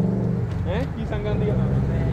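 A road vehicle's engine running steadily nearby, a constant low hum, over street traffic; a few faint spoken words come in about a second in.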